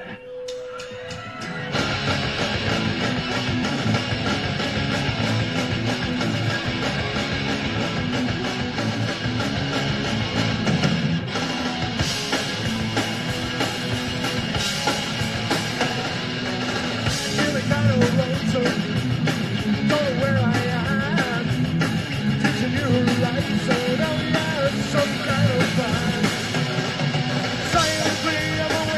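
Punk rock band playing live: distorted electric guitars, bass and drums at full volume. It opens with a single held tone, and the full band comes in about two seconds in.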